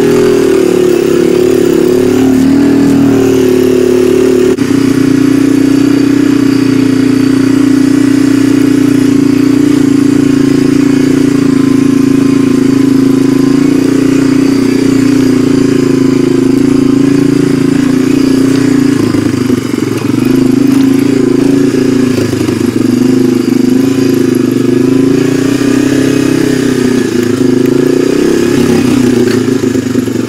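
Honda ATV engine running under way on a rough trail, a loud steady engine note that drops slightly a few seconds in and rises and falls a little with the throttle.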